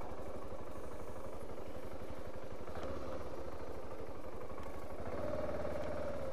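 BMW G 650 GS Sertao's single-cylinder engine running steadily at low revs as the motorcycle is ridden slowly, with a slight rise in engine note about five seconds in.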